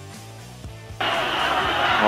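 Soft background music with low held notes. About a second in, it cuts suddenly to the steady noise of a stadium crowd, heard through an old, narrow-band television broadcast.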